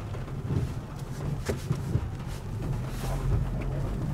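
Car engine running with a steady low hum, heard from inside the cabin as the car creeps along, with a few faint knocks.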